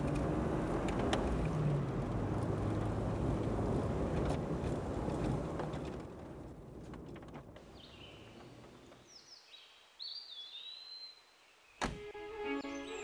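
A car driving: a steady low engine hum under road noise, which fades away about halfway through. Then a few faint bird chirps, and a single sharp click near the end.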